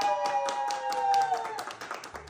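Rapid hand clapping, with a long high held tone over it that stops about one and a half seconds in.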